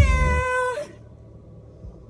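A woman singing along to pop music holds a high, slightly wavering note that ends under a second in, as the music stops; after that it is quiet.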